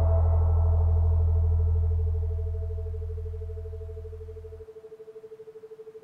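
Meditation music: a deep, gong-like tone fading out over about four seconds and then cutting off, over a steady tone on a 432 Hz base that pulses rapidly, the beat of a brainwave-entrainment track set at 14 Hz.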